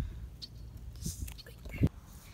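Scissors snipping dandelion stems in the grass: a few soft clicks over a low rumble, then one sharp thump just before the end.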